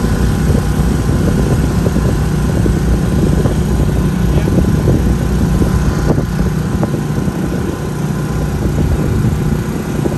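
Diesel engine of a Cat 308 mini excavator running steadily as it sets a wooden dock piling, with a constant low drone throughout.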